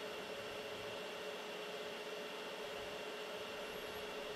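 Steady whirring hiss of a 3D printer's cooling fans running while the hotend preheats for extrusion, with a faint steady hum under it.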